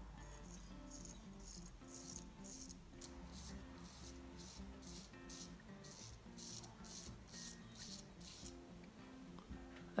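Faint background music: a repeating low melody with a steady shaker-like rhythm.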